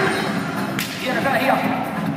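A tiger trainer's whip cracks once, a single sharp snap about a second in.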